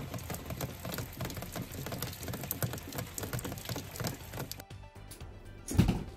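Steady rain pattering and dripping, a dense haze of small taps. It breaks off about five seconds in, and a dull thump comes just before the end.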